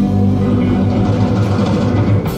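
Live rock band with cello playing: electric guitar, bass guitar and bowed cello holding sustained low notes, with the drums coming in strongly just after.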